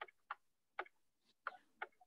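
Faint, irregular ticks of a stylus tip touching down on a tablet as handwriting is drawn, about five in two seconds.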